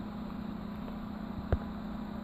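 Steady low hum over faint room noise, with a single short click about three-quarters of the way through.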